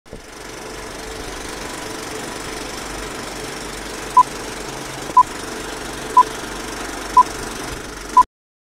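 A steady, rumbling, machine-like noise with a faint hum. From about four seconds in, four short beeps of the same high pitch sound exactly one second apart, over the noise.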